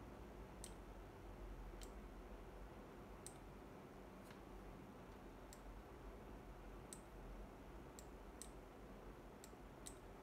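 Computer mouse clicking: single sharp clicks at irregular intervals, roughly one a second, over a faint low hum in otherwise near silence.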